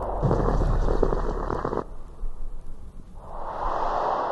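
Edited sound-effect noise: a dense rumbling burst that cuts off abruptly just before two seconds, then a whoosh swelling in near the end.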